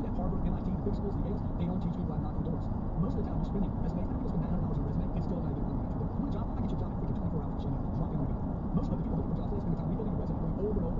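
Steady road and engine noise of a car cruising at highway speed, heard inside the cabin as an even low rumble.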